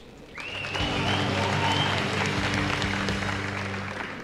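Studio audience applause swelling about a third of a second in, over a sustained low musical chord, then fading toward the end.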